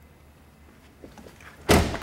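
Car door of a 2013 Cadillac CTS being shut: a few light clicks, then one solid slam near the end.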